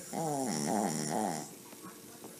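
Small shaggy dog asleep on its back making a pitched, snore-like sound in its sleep: about a second and a half of three falling pulses.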